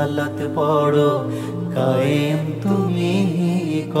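Male voice singing a Bengali Islamic song (gojol) in long, wavering held notes over a low steady drone.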